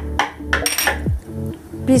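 Clinks of a small bowl being set down on the counter and nuts tipped into a non-stick kadhai, over background music with a low, falling drum beat about once a second.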